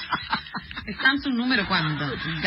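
A person laughing in a quick run of short bursts, followed by talking, heard in a radio broadcast.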